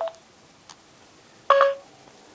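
Two electronic prompt beeps as Siri is called up through a Motorola Roadster TZ700 Bluetooth speakerphone by its voice button. A short blip comes at the start, and a louder, longer tone follows about a second and a half in.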